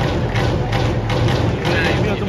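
Stadium cheering music with a fast, steady drumbeat, with crowd voices underneath.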